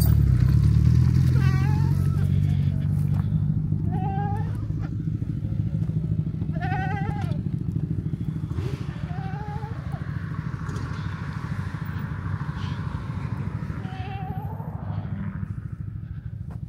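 A motor vehicle's engine running with a deep steady hum that gradually fades away. Short quavering calls sound every two or three seconds over it.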